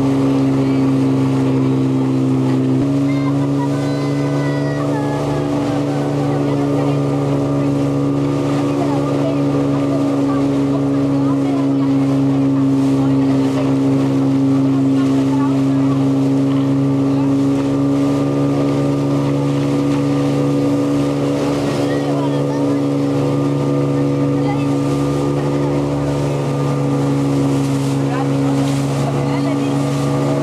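A small motorboat's engine running steadily at cruising speed. Its even, droning note shifts abruptly about three seconds in and then holds.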